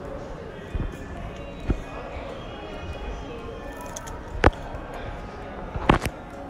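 Four sharp knocks, the loudest about four and a half seconds in, over background music and indistinct voices.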